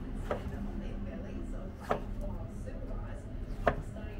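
Knife striking a plastic cutting board: three sharp, unhurried knocks about a second and a half apart, the last the loudest, over a low steady hum.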